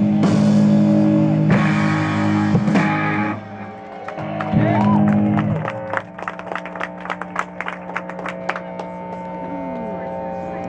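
Live rock band of electric guitars and drums hitting loud final chords with cymbal crashes, breaking off about three seconds in; one more chord sounds around five seconds in. Then guitar tones and amplifier hum are left ringing, with scattered sharp clicks over them.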